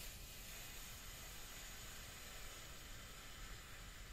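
Faint steady hiss of room tone, with no distinct sound events.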